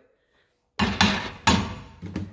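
A few sharp clunks and knocks, about a second in and again about half a second later, as the microwave door is opened and the plastic Microfleur flower press is set down on the glass turntable.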